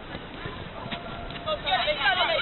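Five-a-side football in play: a few light knocks of boots and ball on the artificial pitch, then loud high-pitched shouts from the women players starting about a second and a half in.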